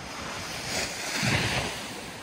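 Surf breaking and washing up the beach: the wash swells to a peak in the middle, then eases off.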